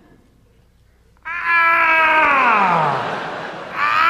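A man's long, loud, drawn-out wail of 'owww' into a microphone, starting about a second in and sliding steadily down in pitch over about two seconds, with a short 'ow' starting just before the end. It is a comic impression of a disappointed father's groan.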